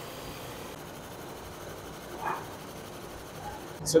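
Steady, even running noise of a CNC wood bat lathe as its knives turn the Axe-style knob on a wooden bat blank. A brief, slightly louder sound rises over it a little past two seconds in.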